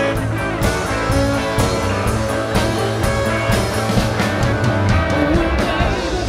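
Live rock band playing: electric guitars over a steady drum beat, an instrumental stretch with no clear vocal line.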